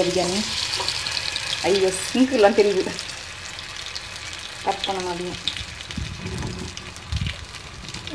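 Batter-coated bread frying in hot oil in a pan, with a steady sizzle that is loudest in the first few seconds and then settles to a softer hiss.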